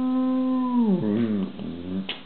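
A man's voice holding one long, steady note, then sliding down in pitch about a second in and wavering low and weaker.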